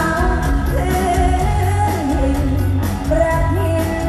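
A woman singing Thai mor lam into a microphone over a live band, amplified through a stage PA: a gliding, ornamented vocal line over a steady, heavy bass beat.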